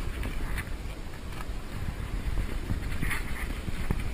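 Outdoor street ambience with wind rumbling on the microphone, and a few faint light clicks and rattles.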